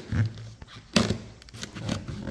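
Knife cutting and scraping in the aluminium channel of a window-screen frame as the old mohair pile weatherstrip is worked loose and pulled out: a few short scrapes and clicks, the sharpest about a second in.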